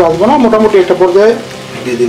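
Diced potato filling frying in a pan and being stirred and scraped with a wooden spatula. Over it is a louder singing voice with drawn-out, gliding notes that drops away about one and a half seconds in.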